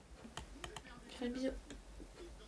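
A few faint, sharp clicks, then a short murmured voice sound about a second in, over quiet room sound.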